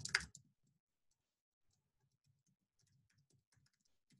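Faint typing on a computer keyboard: a run of quick, light key clicks that starts about a second in.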